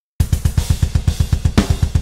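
Programmed MIDI drum kit playing back with every note at full velocity 127: fast, evenly spaced kick drum hits at about ten a second under steady cymbals. It starts about a fifth of a second in. The uniform velocities give the flat, robotic feel of unhumanized programmed drums.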